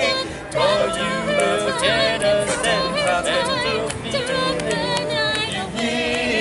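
A cappella mixed quartet of carolers, two men and two women, singing a Christmas song in close harmony, with a short break between phrases just after the start.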